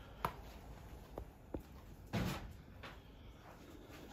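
Faint handling noises: a few small clicks and one brief, slightly louder scuff about two seconds in.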